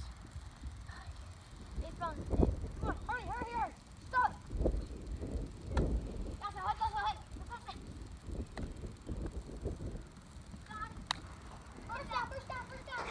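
Children's voices calling out indistinctly across an open field during play, over an uneven low rumble, with a couple of sharp clicks about six and eleven seconds in.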